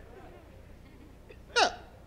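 Faint room murmur from a congregation, then about a second and a half in a single short vocal exclamation from a person, its pitch falling steeply.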